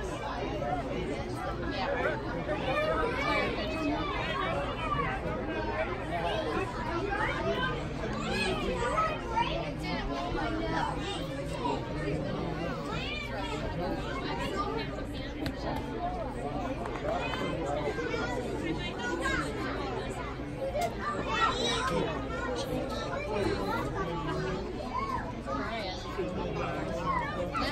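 Spectators' chatter: many voices talking over one another at once, with no single voice standing out, at a steady level throughout.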